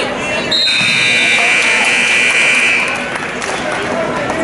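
Electronic scoreboard buzzer sounding steadily for about two seconds, starting about half a second in, with a second, higher tone overlapping it briefly at the start. Shouting voices from the crowd run underneath.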